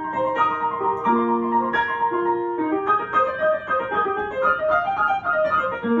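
Upright piano being played: a melody over held chords, with quicker notes stepping up and down in the second half.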